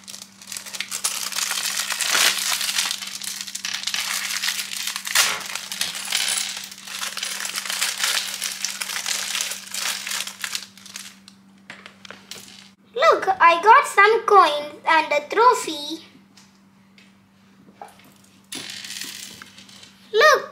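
A plastic LEGO parts bag crinkling as it is handled and torn open, with small LEGO pieces clicking and rattling inside and onto the table. The crinkling and clattering fill most of the first half, then fade for a few seconds before starting again near the end.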